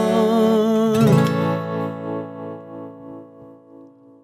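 Closing chord of an acoustic guitar strummed about a second in and left to ring out, fading away over about three seconds as the song ends. Before it, a held sung note carries on over the guitar.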